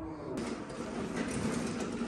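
Steady rolling rumble of a loaded hand cart's wheels running along a hard floor.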